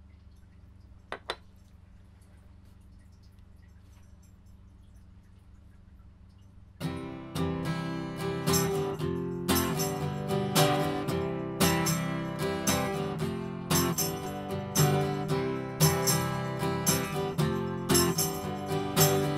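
A quiet room with two quick clicks about a second in, then about seven seconds in an acoustic guitar starts strumming chords in a steady rhythm.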